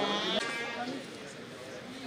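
People's voices: spectators chattering and calling out, with a drawn-out call in the first half second before the talk drops to a lower murmur.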